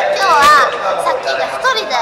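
Speech only: lively talking voices, with no other distinct sound.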